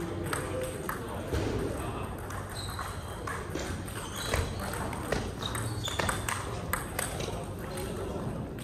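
Table tennis balls being struck by paddles and bouncing on tables, a quick irregular series of sharp clicks and pings, over background chatter.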